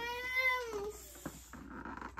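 A cat meowing once: one drawn-out meow that rises a little and then falls, over about a second.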